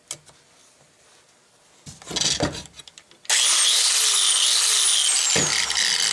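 A few knocks as the plug is seated, then a DeWalt angle grinder switches on about halfway through and runs loud and steady at full speed. It is powered through the newly repaired extension cord end, showing that the repair works.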